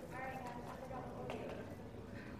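Faint voices in a room, with a single sharp tap a little over a second in.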